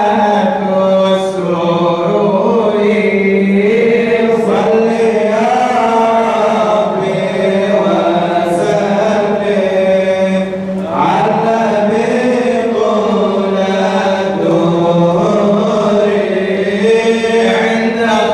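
Men chanting a madih nabawi, an Islamic praise song for the Prophet, into microphones, in long held notes that glide from pitch to pitch.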